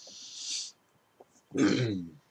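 A man's hissing breath through the teeth, swelling and then cut off sharply, followed about a second later by a short, loud, rough grunt from the throat.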